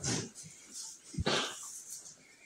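Goats in the pen making a few short, breathy, unpitched sounds. Just over a second in there is a knock, followed by a longer noisy burst.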